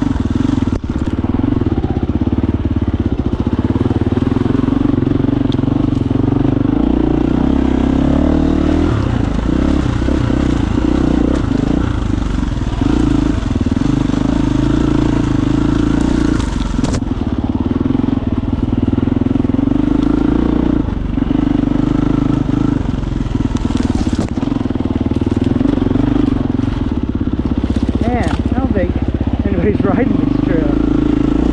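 KTM 350 EXC-F's single-cylinder four-stroke engine, with an FMF exhaust, running at low speed on tight trail. The throttle closes briefly every few seconds and the engine note sags before it picks up again.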